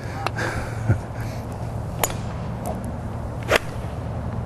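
Golf iron striking a ball off the turf, a single crisp click about three and a half seconds in, with a couple of fainter clicks earlier.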